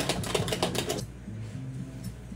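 A fast, dense run of sharp clicks and rattles that stops abruptly about a second in, over background music with a low bass line.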